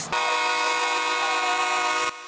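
A horn blowing one steady, loud multi-note chord for about two seconds, cut off abruptly.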